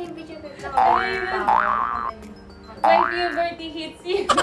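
Cartoon 'boing' sound effects: three springy rising pitch glides, one about a second in, one halfway through and one near the end, over a soft background music bed.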